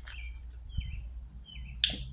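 A small bird chirping three times, short high chirps that drop in pitch, evenly spaced about two-thirds of a second apart. A sharp click comes near the end.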